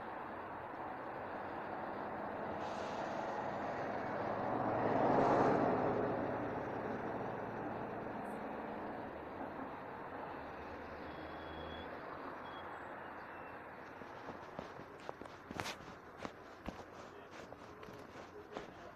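Outdoor street recording played back: a passing vehicle swells to its loudest about five seconds in and fades away, then footsteps click near the end.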